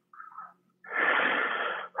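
A person's breath into the microphone, a breathy rush about a second long that starts a little under a second in.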